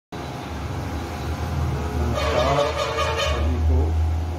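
Steady low rumble of road traffic, with a vehicle horn sounding for about a second a couple of seconds in.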